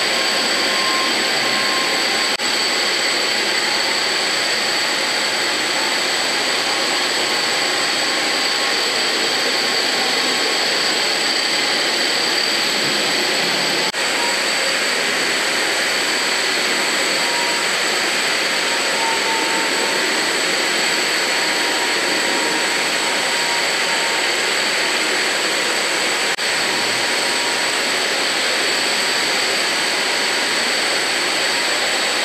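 WerkMaster The Edge 110-volt planetary concrete grinder with its dust-extraction vacuum, running steadily as it grinds a concrete floor with 30-grit metal bond tools in the first, coarse grinding stage. The noise is loud and continuous with a faint high whine, shifting slightly at a few edit points.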